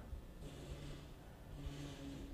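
A man's faint closed-mouth 'mm' hum, held briefly twice, as a thinking pause.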